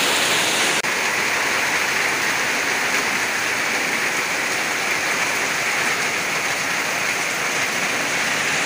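Heavy rain pouring steadily onto leaves and bare ground, a loud, even hiss.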